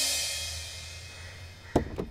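Scene-transition music sting: a cymbal wash that peaks at the start and fades away over about a second and a half, followed by one sharp click near the end.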